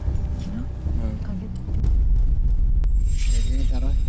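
A deep, steady rumble that swells louder about two seconds in, with brief low voices over it and a single sharp click near the end.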